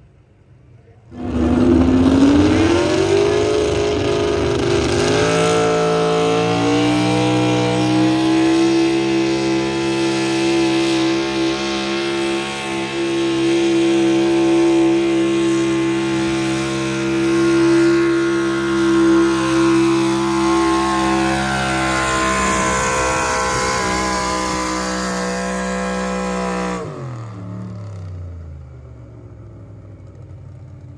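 Pulling vehicle's engine coming in abruptly about a second in, revving up and then held at high, steady revs for about twenty seconds as it hauls the sled down the track. Near the end the revs drop and the engine fades away.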